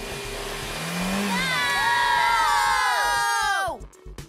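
A cartoon leaf blower blasting a steady rush of air. From about a second in, several characters cry out together over it in long falling yells, and both cut off just before the end.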